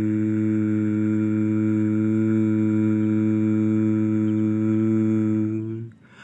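A man's voice humming one long, steady low note, a mouth-made engine noise for the toy excavator, held until it breaks off near the end.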